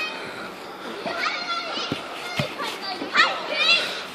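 Children's voices calling and shouting, fainter than nearby speech, with one knock about halfway through.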